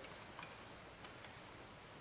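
Near silence: faint room tone with a few faint small clicks.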